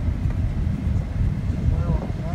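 Steady low road and engine rumble heard from inside the cabin of a moving minivan.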